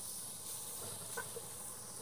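Ground beef sizzling faintly in a hot pot as it starts to brown, a steady even hiss.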